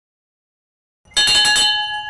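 Silence, then about a second in a bell chime rings out: several steady ringing tones with rapid clicks over them, the sound effect of a subscribe-button animation ringing its notification bell.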